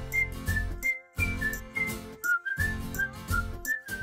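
Short title-theme jingle of a TV serial: a high, whistle-like melody of short notes over a pulsing beat, broken by two brief pauses and ending on one held note.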